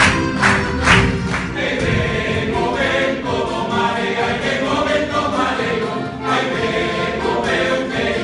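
Male folk group singing in chorus, accompanied by guitars, a lute and an accordion. Sharp rhythmic claps, about two a second, run through the first second or so before the voices take over.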